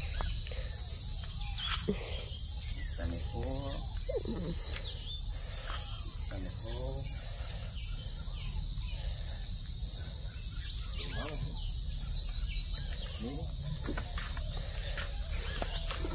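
A steady, high-pitched chorus of insects keeps up without a break.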